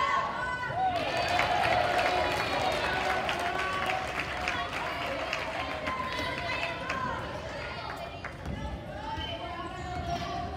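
Players and spectators calling out in an echoing gym during a wheelchair basketball game, busiest in the first few seconds, with wheelchairs moving across the hardwood court.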